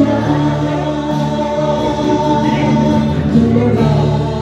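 Live music amplified through PA speakers: electronic keyboard backing with a male singer on a handheld microphone, holding long notes.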